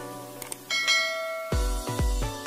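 Subscribe-animation sound effects over music: two quick clicks about half a second in, then a bright bell chime that rings for under a second. About halfway through, an electronic dance beat with heavy bass kicks starts.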